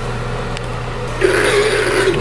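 A steady low hum, then about a second in the motor of a Georgia-Pacific enMotion automatic paper towel dispenser starts running as it feeds out a towel.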